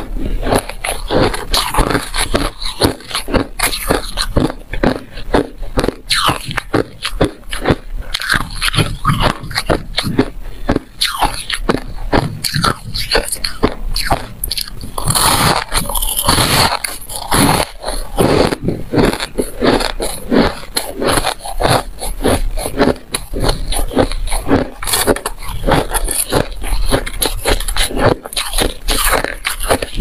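Close-miked crunching of powdery white ice being bitten and chewed: a dense, continuous run of crisp crunches.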